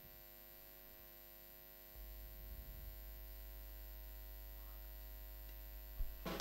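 Faint, steady electrical mains hum from the stage sound system during a quiet pause, with a low rumble that rises slightly about two seconds in.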